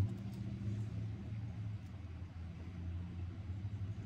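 A steady low hum, like a motor or engine running, with no sudden sounds.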